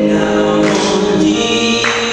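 A man singing a gospel song into a handheld microphone, holding long sustained notes.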